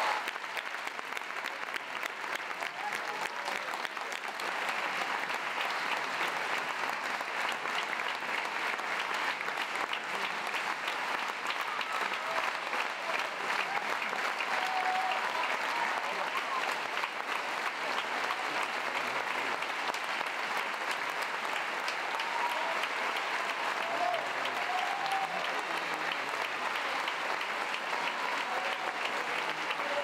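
Large audience applauding: dense, steady clapping that holds throughout, with a few voices calling out above it now and then.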